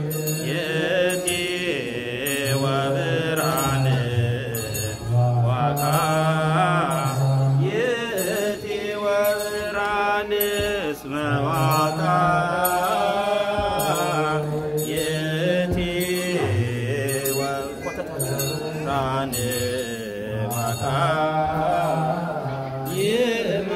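A male voice chanting an Ethiopian Orthodox liturgical hymn into a microphone, amplified over the church sound system, with a steady percussive beat under it.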